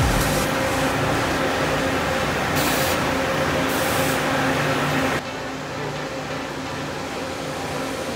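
A parked coach bus running with a steady hum, with two short hisses of air about three and four seconds in. About five seconds in the sound drops suddenly to a quieter, steady background noise.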